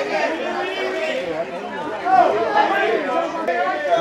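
Several voices talking and calling out over one another: photographers shouting for a pose.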